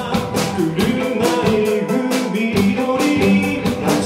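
Live pop-rock band playing: a male lead voice singing over drum kit, electric bass and electric guitar, with a steady drum beat.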